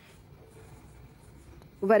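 Faint, steady background hiss in a pause between spoken words, with a voice starting near the end.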